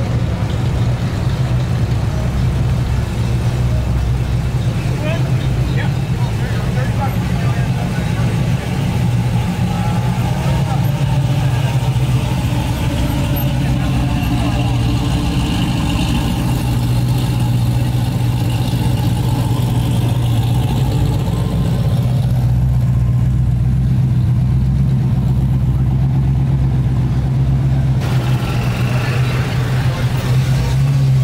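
Classic cars and hot rods rolling slowly past at low speed, their engines idling with a steady deep rumble.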